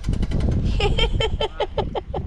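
A woman laughing in a quick run of short falling 'ha' syllables, starting a little under a second in, over a steady rumble of wind buffeting the microphone.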